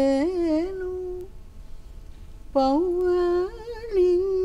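A woman's voice singing a slow, wordless, unaccompanied melody: a held note that wavers and rises over its first second, a pause of about a second, then a second phrase with quick shakes on its held notes.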